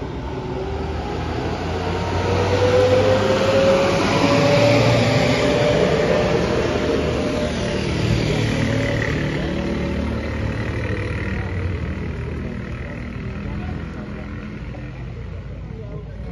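A motor vehicle driving past close by: its engine note and low rumble build over the first few seconds, rise slightly in pitch, then drop and fade as it moves away.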